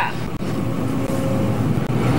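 Pickup truck engine running with a steady low sound.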